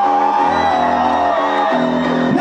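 Live rock band playing: electric guitar chords struck in a steady, even rhythm over a bass line, with a long wavering note held above them.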